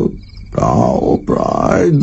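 A deep human voice making two drawn-out grunts, one about half a second in and one just after a second. Each swells and fades. A faint high chirping runs underneath.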